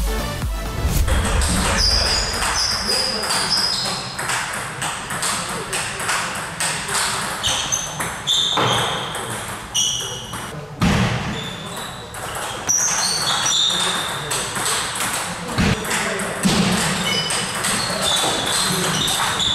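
Table tennis rally sounds in a sports hall: the ball clicking sharply off bats and table, short high squeaks of sports shoes on the wooden floor, and voices in the hall behind. Electronic dance music cuts off at the start.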